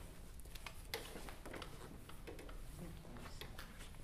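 Quiet classroom room tone with faint scattered clicks and rustles, and a brief faint murmur of a voice a little past the middle.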